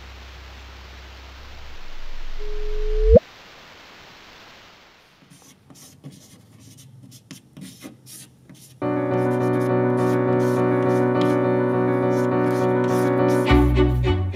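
Recorded gravitational-wave signal of two black holes merging, shifted up in frequency so it can be heard: a rumbling noise with hiss swells, then ends in a brief chirp that sweeps sharply upward ('whoop') about three seconds in. After it come chalk taps and scratches on a blackboard, then a sustained music chord from about nine seconds.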